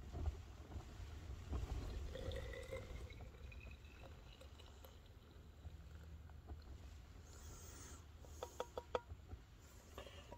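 Hot water being poured into a hot water bottle, a faint tone rising in pitch as the bottle fills. A few small clicks come near the end.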